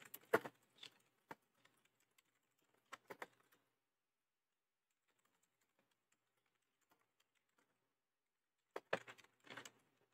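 Computer keyboard being typed on, faintly, in short bursts of keystrokes: a cluster at the start, a few keys about three seconds in, then a long quiet stretch before another burst near the end.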